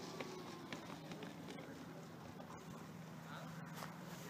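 Faint whine of an FMS 1700 mm Corsair RC plane's electric motor falling in pitch as it spools down on the landing rollout, over a steady low hum and a few faint clicks.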